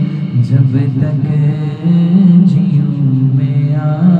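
A man singing an Urdu naat solo into a handheld microphone, drawing out long, bending notes with no instruments.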